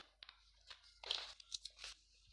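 Faint rustling and crinkling of a sheet of paper as it is handled and laid down on a desk, a few soft rustles from about a second in.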